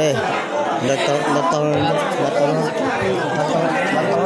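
Several people's voices talking over one another, men's voices loudest.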